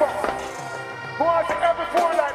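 Live dancehall music through a concert PA: a band backing track with bass and drum hits, and a voice singing or chanting over it, strongest in the second half.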